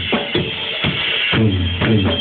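Loud electronic dance music played live on a small keyboard synthesizer: a drum-machine beat with a steady low bass tone. A harsh, noisy high layer sits over the first second and a half.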